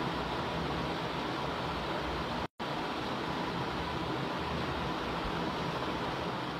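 Steady rushing background noise with a faint steady tone, cutting out completely for a moment about two and a half seconds in.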